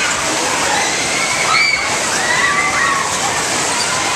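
Loud steady rush of a spinning fairground ride running at speed and the crowd around it, with high shrieks from the riders rising and falling over it through the middle.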